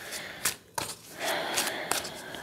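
Tarot cards being shuffled by hand: a few sharp card snaps, then a longer rustling shuffle in the second half.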